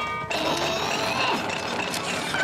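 Cartoon sound effect of a metal chain rattling, starting a moment in, over background music.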